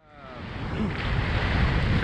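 Wind rushing over the camera microphone during a tandem skydive, rising from silence over the first second and then holding steady.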